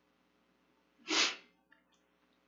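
A single short, sharp burst of breath noise close to the podium microphone, about a second in and lasting about half a second.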